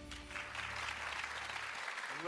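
Studio audience applauding, swelling in the first half second, over a music cue whose low sustained bass note stops just before the end.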